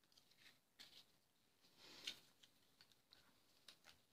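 Faint paper handling: light taps and clicks of card stock and die-cut paper pieces being moved, with one short rustle of a paper sheet sliding about two seconds in.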